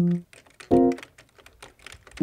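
Rapid keyboard typing clicks over music, which plays two short pitched notes: one at the start and one about three-quarters of a second in.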